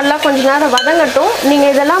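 A steel ladle stirs small onions, garlic and tomato frying in oil in a metal pot: a sizzle with scraping clicks. Over it runs a loud wavering squeal that rises and falls in pitch about twice a second.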